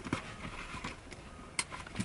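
Faint rustling and a few light knocks as a med kit and gear are handled in the back of a car.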